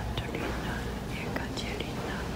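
A person whispering in short breathy phrases over a low steady hum.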